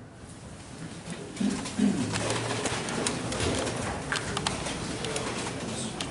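A room of people sitting back down on wooden-framed chairs: creaking, knocking and shifting of the chairs with clothing rustling. It begins about a second in and grows busier, with a few brief low squeaks or murmurs.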